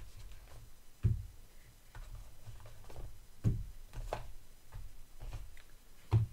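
Cardboard packaging being handled: small accessory boxes lifted out of a product box and set down on a table, giving scattered taps and light knocks, the loudest about a second in and again about three and a half seconds in.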